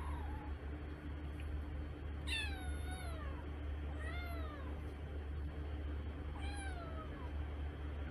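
A kitten meowing three times, each a short high call that falls in pitch, over a steady low hum.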